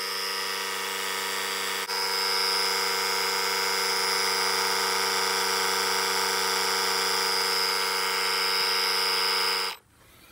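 The small electric air compressor built into a Stanley FatMax PowerIt 1000A jump starter runs with a steady hum while inflating a car tire. It dips briefly about two seconds in, then cuts off suddenly near the end, shutting itself off on reaching its set pressure of 33 PSI.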